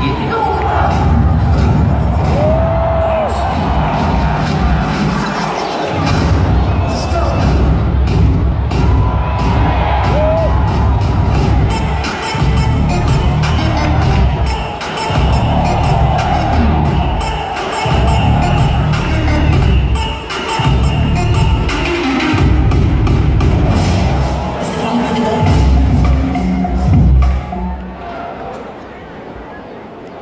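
Loud music with a heavy bass beat played over a festival stage sound system for a dance performance; it drops away right at the end.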